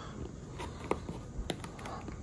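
Hand handling a hard plastic case and its rubber port covers: a few faint, short clicks and taps, the two sharpest about a second and a second and a half in.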